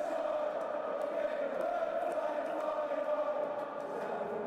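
End-screen audio of many voices chanting together in one steady, wavering held sound.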